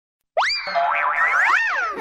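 Cartoon-style 'boing' sound effect for a logo intro. After a brief silence it makes a quick upward swoop in pitch, then wobbling pitch glides that rise and fall, ending in one large rise and a slide back down.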